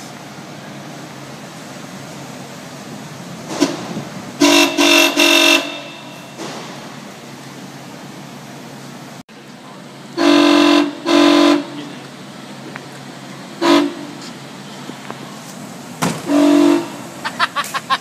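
Car horn wired into the brake-light circuit, sounding in short loud blasts each time the brakes are applied. There are three quick honks about four seconds in, two a little after ten seconds, then single honks.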